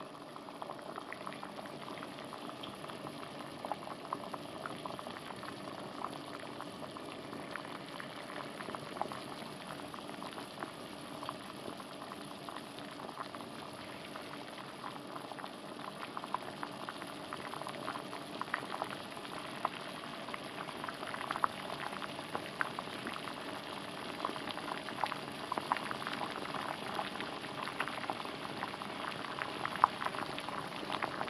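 Pot of water at a rolling boil: steady bubbling with many small pops and crackles, growing a little louder over time.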